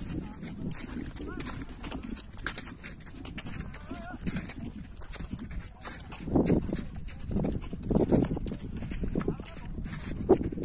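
Indistinct voices without clear words, louder in a few short bursts in the second half, over a steady rumble of outdoor background noise.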